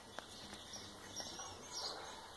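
Faint bird chirps: a few short high calls, clustered in the second half. A single faint click comes just after the start.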